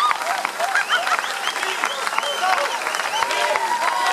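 Audience applauding, many hands clapping steadily, with voices calling out from the crowd over it.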